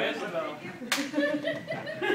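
A single sharp smack about a second in, heard over crowd chatter.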